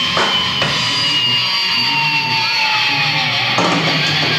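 Metalcore band playing live: drum kit and distorted electric guitars, with a long held note slowly falling in pitch through the middle.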